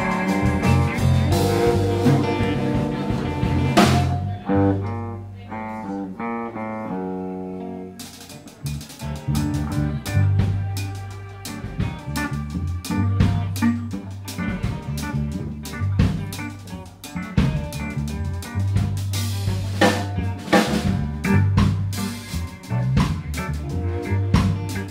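Live instrumental rock jam on electric guitar, electric bass and drum kit. A few seconds in, the drums drop out, leaving guitar and bass stepping through notes, then the kit comes back in with a steady beat.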